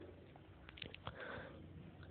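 Near silence: faint room tone with a few soft, brief sounds about a second in.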